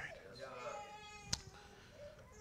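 A faint, high-pitched voice drawn out for about a second, with one sharp click just after the middle.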